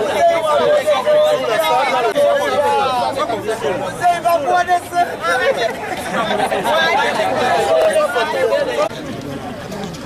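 Several people talking at once close by, their voices overlapping into chatter, a little quieter near the end.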